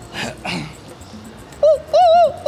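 A man's vocal imitation of an animal cry, made through cupped hands: a loud, high, wavering call that starts about one and a half seconds in. It sounds like a squawking, distressed hen.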